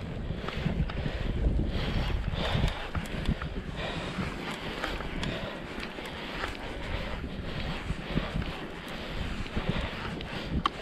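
Wind buffeting the microphone over choppy water lapping at a kayak's hull, with a few faint scattered clicks.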